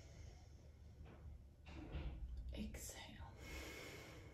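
Faint, slow breathing by a woman doing a belly-breathing exercise: a few soft, airy breaths in and out, one longer breath near the end.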